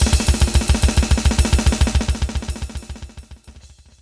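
Electronic drum kit played fast, with rapid, even kick drum strokes under snare and cymbals, fading out near the end.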